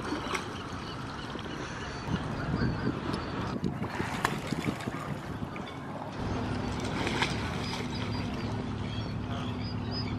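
Waterfront background noise with a few faint clicks; about six seconds in, a steady low engine hum starts and runs on.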